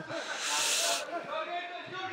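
A short, high, breathy hiss lasting about half a second, starting about half a second in, over faint background voices.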